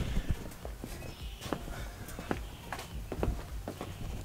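Footsteps of a person walking, heard as a string of irregular light knocks and clicks over a low rumble.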